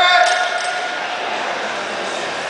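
A single drawn-out shout, held on one pitch for about a second and then fading into the background noise of a large, echoing hall.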